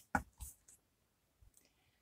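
A few light clicks and taps from a deck of oracle cards being handled, all within about the first second.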